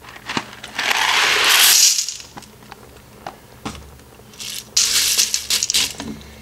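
Dry penne pasta poured from a cardboard box into an Instant Pot, rattling out in two pours, about a second in and again near the end, with a few light clicks in between.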